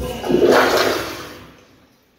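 Commercial toilet with a chrome flushometer valve flushing: a loud rush of water that builds over the first half second, then fades out by about a second and a half in.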